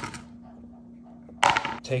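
A brief pause in a man's speech: quiet room tone with a faint steady hum. About a second and a half in, his voice comes back.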